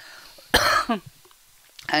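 A single short cough about half a second in, followed near the end by the first spoken word of the reading resuming.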